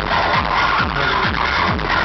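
Loud acid techno from a DJ set over a festival sound system, heard from within the crowd, with a steady kick drum about twice a second.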